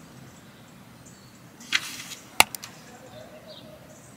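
A short swish, then about half a second later a single sharp snap, the loudest sound, followed by a couple of tiny clicks, over faint outdoor background.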